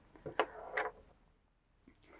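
Faint handling of a crocheted piece and its yarn as it is turned over: a couple of soft ticks with a light rustle in the first second, then near quiet.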